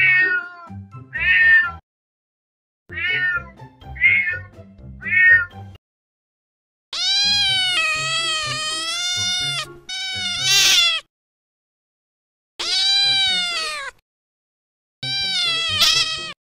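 A cat meowing in separate calls with silence between them. First come several short, high meows, then longer, lower meows, one of them drawn out for nearly three seconds with a wavering pitch.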